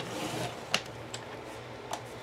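Blade carriage of a Fiskars paper trimmer, fitted with a dull blade, sliding along its rail and slicing through a stack of book pages, with a soft scrape followed by three light clicks from the plastic carriage.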